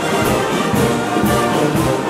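Live brass band of trombones, trumpets and sousaphone playing a dance march, with a steady beat about twice a second.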